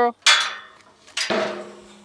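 Two sharp metal clanks about a second apart from a steel pipe livestock gate. Each rings on, and the second leaves a long, low, steady ring.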